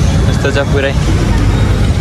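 Busy road traffic: a steady low rumble of passing motorbikes and a bus, with people's voices briefly heard over it about half a second in.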